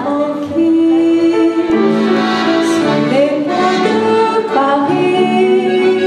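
A woman singing a French chanson with piano and accordion accompaniment, on long held notes.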